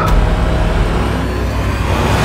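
Low, steady engine rumble of a van.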